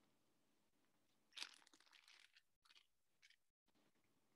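Faint crunching and clicking of plastic ball-and-stick molecular model pieces being handled as bond sticks are fitted into atom balls. The loudest stretch comes about a second and a half in, with two short scrapes after it.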